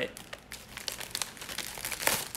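Clear plastic packaging crinkling as it is handled, a string of irregular crackles.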